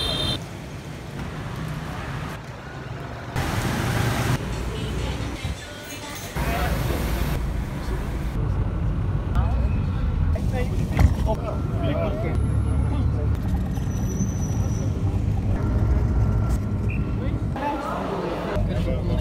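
Bus engine and road noise heard from inside the passenger cabin, a steady low rumble, preceded by a few seconds of street noise broken by abrupt cuts.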